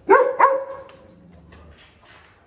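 A dog barking twice in quick succession, right at the start, the second bark trailing off.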